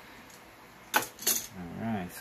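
Two short, sharp clicks about a third of a second apart, about a second in, from handling the embroidery hoop and hoodie as they come apart; a man starts speaking near the end.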